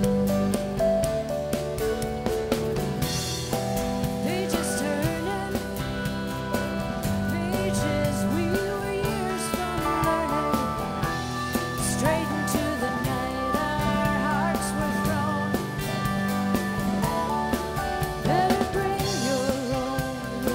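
Live band playing a country-rock song: strummed acoustic guitar, bass and drums keeping a steady beat, with a wavering melody line over them.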